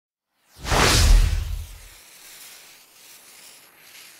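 Logo-reveal sound effect: a whoosh that swells in about half a second in over a deep boom, the boom stopping at about two seconds, then a quieter airy tail that fades out.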